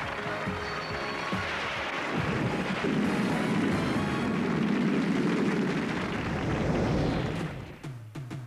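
Theme music of a TV comedy show's opening titles. A few seconds in it swells into a loud, dense noisy climax, which dies away near the end.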